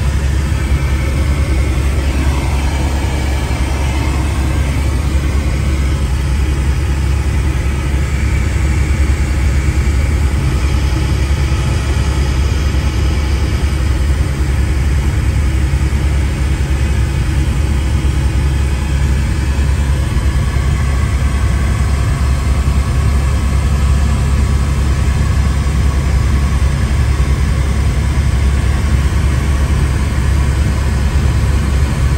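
Helicopter in flight heard from inside the cabin: a loud, steady low drone of rotor and turbine engine that does not let up.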